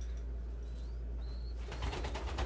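Pigeons in a loft: a few faint, short, high peeps from a young pigeon (squeaker), then near the end a burst of rapid wing-flapping as a pigeon flutters, over a steady low hum.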